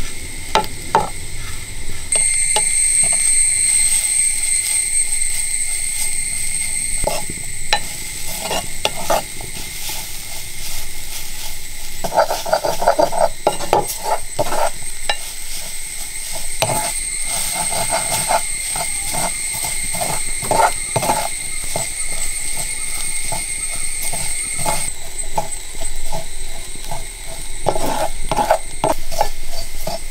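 Grated coconut frying in a metal kadai, stirred and scraped around the pan with a spatula in repeated strokes, with light sizzling.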